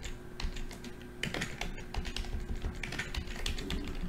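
Irregular clicking of computer keyboard keys being pressed, a little denser after about a second in, over a faint steady electrical hum.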